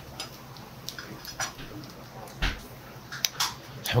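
Several scattered light clinks and knocks of dishes and utensils being set down and handled on a table, over a steady low room hum.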